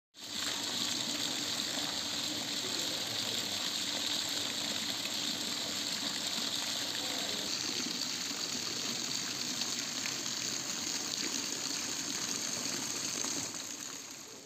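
Water running and splashing steadily from a garden water feature, fading in at the start and dropping away just before the end.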